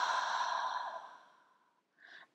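A woman's long, breathy exhale through the open mouth, a voiceless "haa" sigh that fades out about one and a half seconds in: the slow out-breath of a calming breathing exercise.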